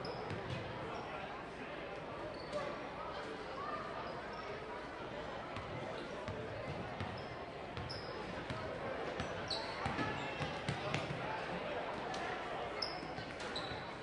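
Basketball bouncing on a hardwood gym floor, with a few short high sneaker squeaks over the steady chatter of voices in the gym.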